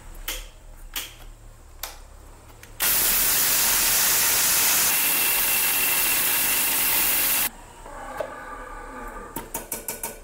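Electric mixer grinder with a stainless-steel jar grinding tamarind seeds into powder. After a few light clicks of handling, the motor runs loud for about five seconds, cutting in and out suddenly, then a fading hum as the blades spin down and a few clicks from the lid near the end.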